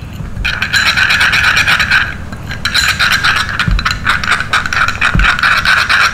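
Metal teaspoon stirring a wet paste of curd, honey and green tea in a small glass bowl, scraping and clinking quickly against the glass. It comes in two spells with a short pause about two seconds in.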